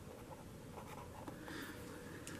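Marker pen writing on paper: faint scratching strokes, a little stronger in the second half.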